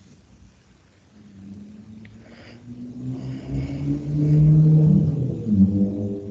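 An engine running, growing louder from about a second in and loudest near the end, its low hum stepping up and down in pitch.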